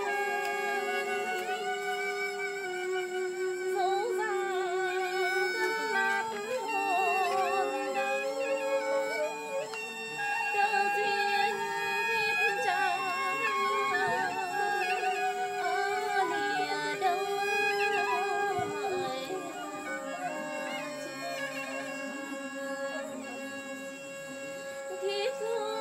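A woman singing Vietnamese chèo folk song with a strong vibrato, accompanied by a vertically held flute playing long held notes.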